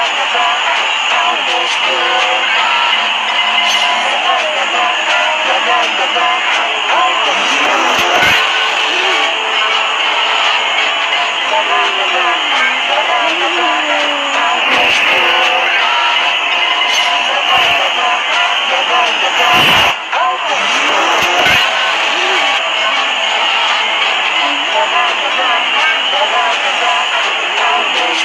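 A dense, distorted mix of music and warped voices laid over one another, with many rising and falling pitch glides and a few sharp clicks scattered through it. The sound of several clips playing at once through heavy audio effects.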